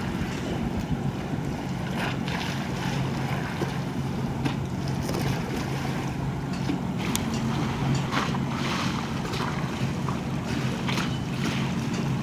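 Steady low drone of a distant bulk carrier's engine, with wind on the microphone and scattered brief splashes of small waves.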